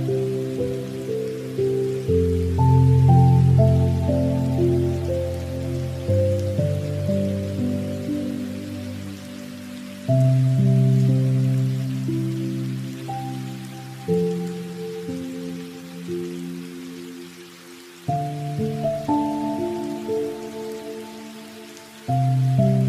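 Soft background music of sustained chords, a new chord struck about every four seconds and fading away, over a steady hiss of rain.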